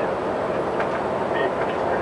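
Steady engine and road noise inside the passenger cabin of a moving bus.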